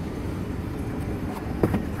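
Steady low outdoor rumble with a few light knocks near the end as a hand grips and lifts the carpeted cargo-floor cover in an SUV's trunk.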